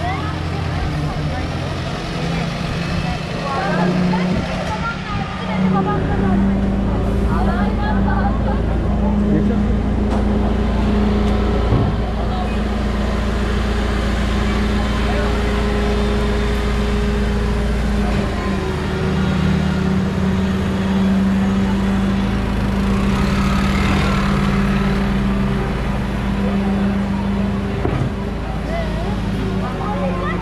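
A garbage truck's diesel engine running close by, a steady low hum that settles in about six seconds in, with people talking around it.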